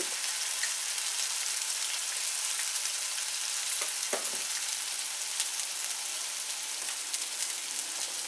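Hot oil sizzling steadily in a kadai as slit green chillies, ginger paste and freshly added ground cumin, coriander and turmeric fry in it.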